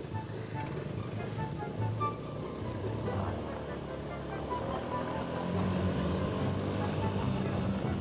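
Background music mixed with motor scooter engine noise from passing bikes. The low engine sound grows stronger about halfway through.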